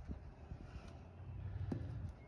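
Faint low rumble of wind on the microphone, with a single light click about three-quarters of the way through.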